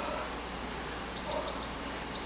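Electronic workout interval timer beeping: a high steady tone with a few short pips on it, starting just past the middle, signalling that the 45-second exercise interval is up.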